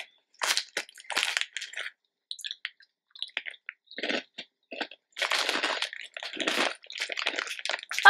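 Crunchy Japanese beer snacks being bitten and chewed close to the microphone: irregular bursts of crunching, with a short lull, then steadier crunching in the second half.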